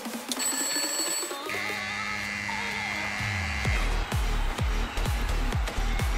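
Electronic dance background music: a brief high ringing tone, like a timer or alarm, sounds near the start, then a heavy kick-drum beat of about two beats a second comes in just before four seconds in.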